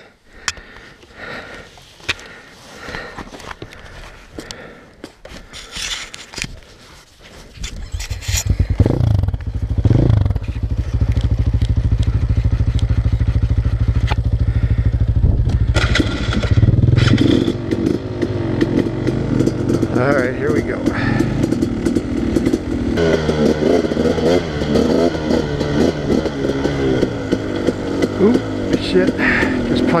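KTM dirt bike: a few seconds of clatter and knocks as the rider handles the bike, then the engine starts about eight seconds in and runs at a steady idle. Around halfway it is revved and the bike pulls away, the engine note rising and falling under load as it rides along the dirt trail.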